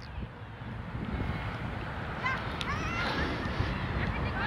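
Distant shouts of soccer players calling across the field, a few short calls starting about halfway through, over a low rumble of wind on the microphone.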